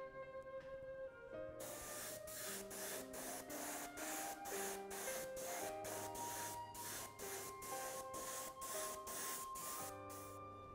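Iwata Eclipse HP-BCS bottom-feed airbrush spraying paint: a high hiss of air that starts about a second and a half in and pulses two to three times a second as the trigger is worked. Soft instrumental background music plays throughout.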